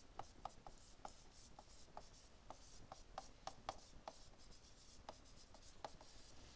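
Faint, irregular light ticks and scratches of a stylus writing on a tablet screen, about three taps a second as letters are written.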